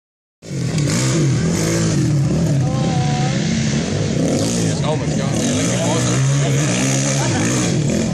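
Dirt bike engines revving on a motocross track, their pitch rising and falling over and over as the riders accelerate and ease off.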